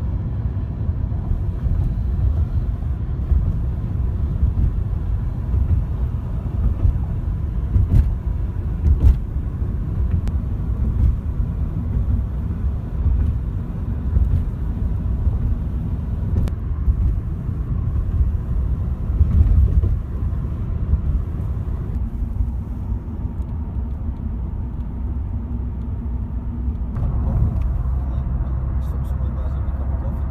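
Car driving, heard from inside the cabin: a steady low road and engine rumble with a few sharp knocks, settling into a steadier engine hum near the end.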